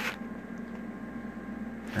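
Steady background hum and hiss with a few faint steady tones and no distinct events, apart from a brief click at the very start.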